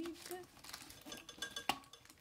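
Silicone stretch lid being pressed and worked over a metal tea tin: soft rubbing and handling noises, with one sharp metallic clink from the tin that rings briefly near the end.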